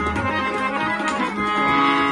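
Harmonium sounding held notes and chords, accompanied by a steady run of tabla strokes.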